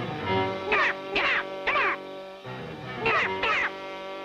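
Cartoon purple Smurfs squawking "gnap!" over background music: about five short, nasal cries, each falling in pitch, in quick twos and threes with a pause in the middle.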